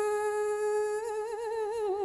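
A woman's voice holding one long sung note of Vietnamese chanted poetry recitation (ngâm), steady at first, then wavering into a wide vibrato about halfway through.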